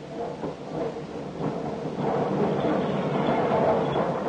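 Steam locomotive pulling into a station, its rumble growing louder and stepping up about two seconds in, with a steady pitched note running through it.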